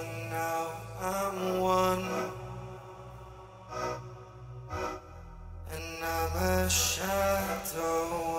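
A beatbox producer track built from mouth sounds. Layered, held vocal tones form slow chords that change about every second over a deep bass hum, with a couple of short percussive hits near the middle.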